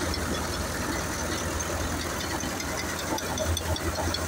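Massey Ferguson 7250 tractor engine running steadily under load, driving a wheat thresher, with a continuous low drone.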